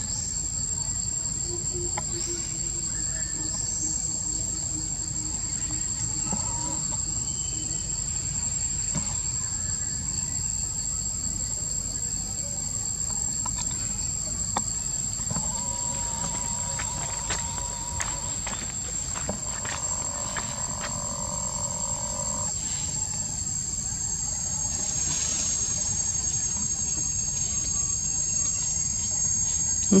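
Steady high-pitched chorus of insects, over a low steady rumble.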